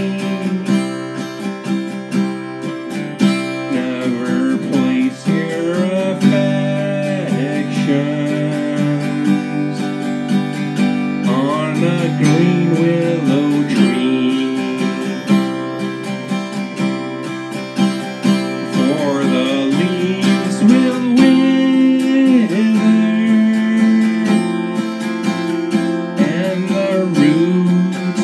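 Acoustic guitar strummed steadily in a simple chord accompaniment, with a bending melody line over the chords at times.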